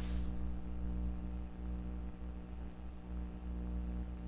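Steady electrical hum and buzz, an unchanging low drone with many evenly spaced overtones, with a brief soft rustle right at the start.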